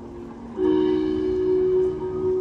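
Marching band enters with a loud, sustained chord about half a second in, rising sharply out of a soft held accompaniment.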